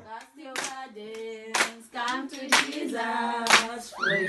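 A small group of voices singing a worship song in a small room, keeping time with hand claps about once a second.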